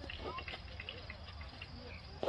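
Faint outdoor ambience: scattered short chirps and faint distant voices over a steady low rumble.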